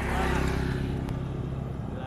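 A small motorcycle engine running as it passes close by, loudest about half a second in and then easing off over a steady low engine hum.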